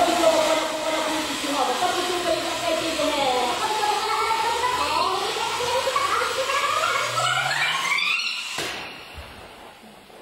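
Long inflated collagen-casing tube squealing as it is stretched and handled, its pitch wavering and then climbing steeply into a high squeal before cutting off suddenly near the end.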